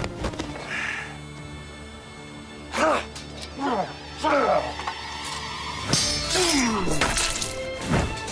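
Dramatic film score held under a series of men's shouts and yells, each falling in pitch, beginning about three seconds in and coming thicker near the end, with a few sharp hits among them.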